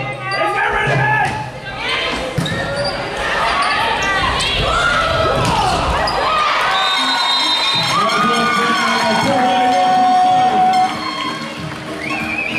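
Indoor volleyball rally in a reverberant sports hall: the ball is struck and thuds, while players and spectators shout and call. The voices build to a peak about ten seconds in, then drop.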